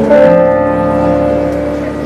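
Electronic stage keyboard playing a chord that is struck just after the start and held, slowly fading.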